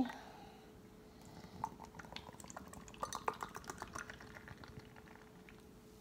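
Foamy India pale ale being poured from a can into a glass: faint fizzing, with small clicks and pops through the middle of the pour, over a faint steady hum.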